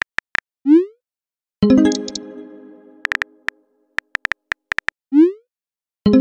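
Phone messaging-app sound effects: quick keyboard taps, a short rising whoosh of a message being sent, then a ringing chime of an incoming message that fades over about a second. Then come more rapid taps and a second whoosh near the end.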